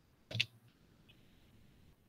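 A single short click about a third of a second in, with near silence around it.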